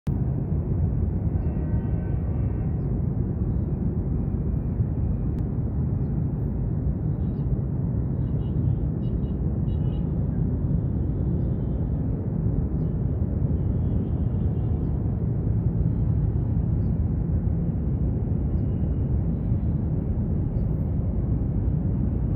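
Steady low outdoor rumble throughout, with a few faint, short high tones around the middle.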